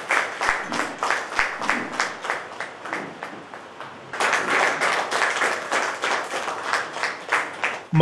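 A small group applauding with steady hand-clapping. It thins out around three seconds in, then swells again about four seconds in.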